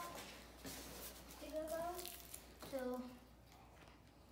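A person's voice, faint and indistinct, in two short phrases about one and a half and three seconds in.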